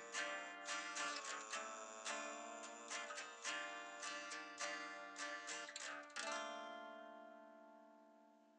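Guitar playing the quiet closing bars of a song, a run of picked notes, then a final chord struck about six seconds in that rings on and fades away.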